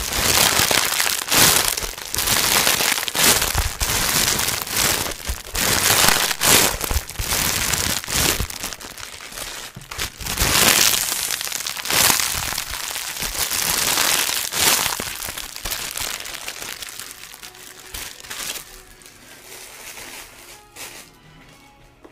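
Thin plastic wrapping around a pack of bathroom sponges crinkling and crackling as hands squeeze and knead it, in loud, dense bursts that thin out and grow quieter after about fifteen seconds.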